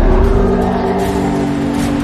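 Dramatic orchestral film score with long held notes, over the steady drone and rush of an airship's engines.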